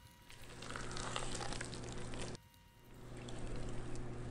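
Spatula stirring thick, wet carrot cake batter with grated carrot and pineapple in a stainless steel bowl: quiet wet squishing in two stretches, the first about two seconds long, the second starting a little before three seconds in.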